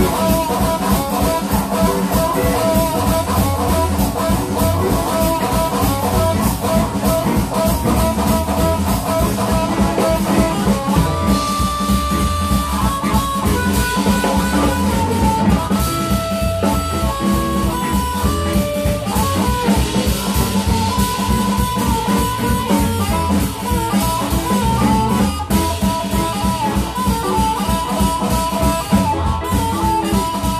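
Live blues band playing an instrumental passage: harmonica played into a vocal microphone, with held notes and runs over electric guitars and a drum kit keeping a steady beat.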